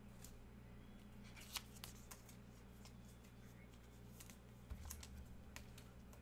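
Faint clicks and taps of trading cards being handled, with a soft thump a little before the end, over a steady low hum.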